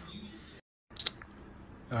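Faint room hiss on a phone recording, broken by a moment of dead silence at an edit about half a second in, then a brief rustle about a second in; a man's voice begins at the very end.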